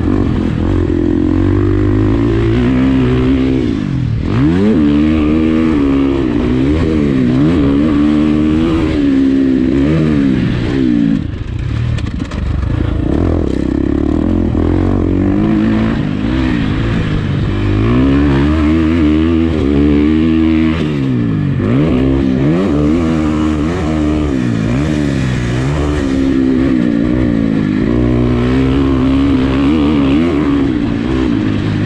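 2019 Husqvarna FC350's 350 cc four-stroke single-cylinder engine pulling hard under throttle, its pitch dropping off and climbing again several times as the throttle is closed and reopened, about a second or so each time.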